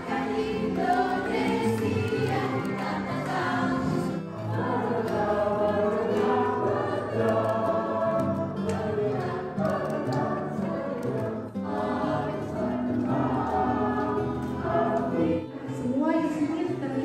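A song with a choir of voices singing over a musical accompaniment. It breaks off briefly about four seconds in and again near the end.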